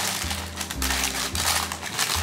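Baking paper crinkling and rustling in quick irregular bursts as it is pressed and folded into a cake tin, over background music.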